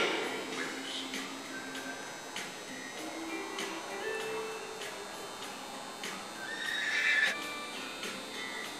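A horse whinnies loudly about seven seconds in, over background music.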